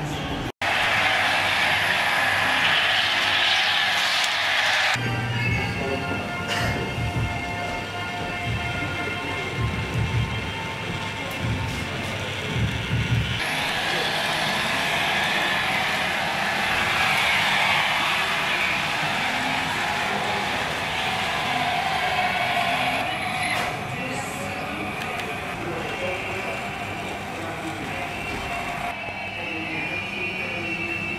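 HO-scale model trains running on the layout track, mixed with café chatter and background music.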